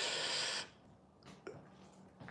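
A short breath out close to the phone's microphone, a soft hiss lasting about half a second, then near quiet with a couple of faint clicks.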